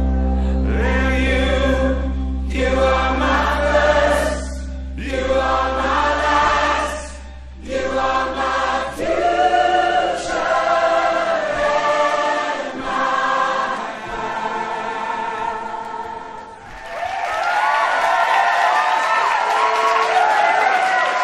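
A crowd of voices singing together in long phrases over a held low bass note that fades away about halfway through. In the last few seconds the singing gives way to cheering and whoops.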